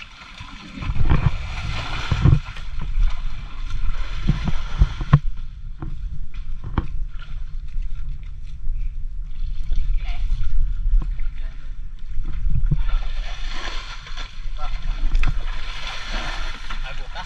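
Muddy water sloshing and splashing as people wade and scoop with their hands in a shallow pool, with scattered knocks and a steady low rumble.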